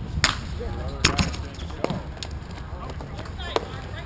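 Sharp hockey-stick clacks as players hit the ball and each other's sticks on a plastic-tile rink: about five hits at uneven intervals, the two loudest in the first second or so. Faint shouts of players and spectators come in between.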